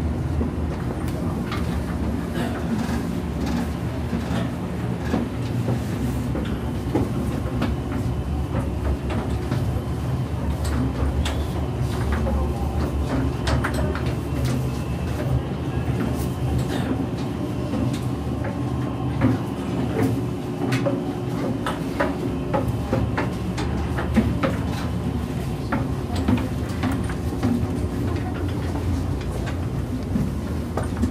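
Steady machinery and ventilation hum inside a warship's passageways (USS Blue Ridge), with footsteps and scattered clicks and knocks from people walking through.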